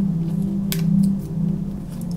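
Soft ambient background music: a low sustained drone that swells and fades slowly. One light click comes about two-thirds of a second in.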